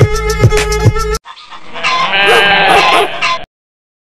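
Background music with a beat cuts off about a second in, followed by a single long, wavering livestock bleat that stops abruptly.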